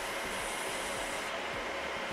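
Steady whir of cooling fans and air handling in a server room, an even noise with no distinct knocks or clicks.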